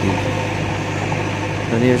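Diesel engine of a JCB 3DX backhoe loader running with a steady low hum while its backhoe arm digs into soil.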